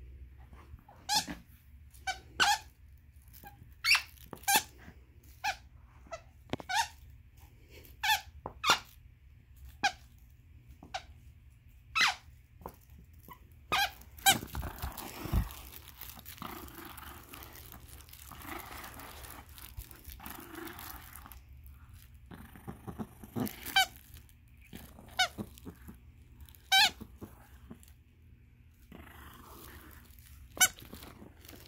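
Squeaker inside a green plush dog toy squeaking in short, sharp squeaks about once a second as a small dog chews it and tugs it against a person's hand. Near the middle the squeaks stop for several seconds of rustling and scuffling with a low thump, then start again.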